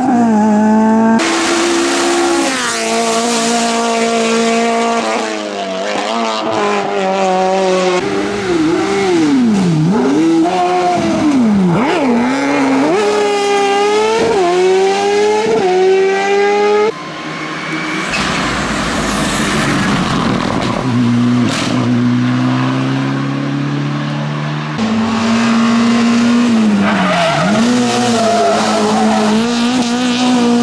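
Several hill-climb race car engines heard one after another, each running at high revs, climbing in pitch through the gears and dropping sharply on lift-off and downshifts. A rougher rushing stretch comes in the middle.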